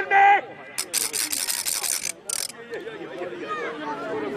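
A spectator's ratchet rattle spun in a rapid, rasping clatter for about a second, then a brief second whirl just after. It follows the last of a run of short, repeated chanted calls at the very start.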